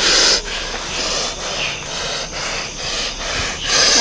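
A man in a trance breathing heavily through clenched lips, in rapid hissing breaths about three a second.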